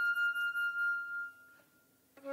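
Solo flute holding a single high note with a slight vibrato, which fades away after about a second into a brief silence.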